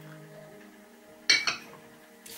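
A ceramic mug set down on a stone coaster: a sharp clink a little past halfway through, then a smaller knock just after, over soft background music.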